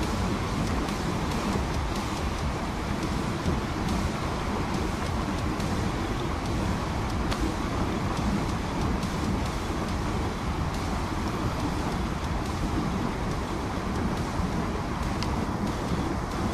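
Steady rushing of a fast river riffle mixed with wind buffeting the microphone, a continuous noise heaviest at the low end.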